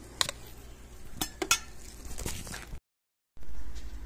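A few light metal clinks and taps of hand tools being handled, spaced irregularly over the first three seconds. The sound cuts off abruptly about three seconds in, and a steady low hum follows.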